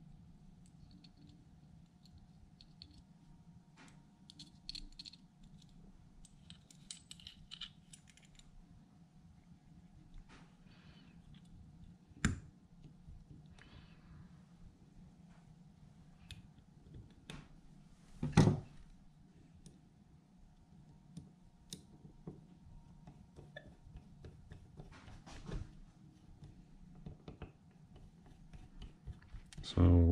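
Faint clicks and taps of small metal carburetor parts being handled and fitted by hand on a towel-covered bench, with two sharper knocks about twelve and eighteen seconds in. A faint steady hum runs underneath.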